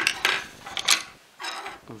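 Hard drone frame parts, a carbon-fibre plate and its folding arms, clattering and knocking together as they are handled: four or so short sharp clacks.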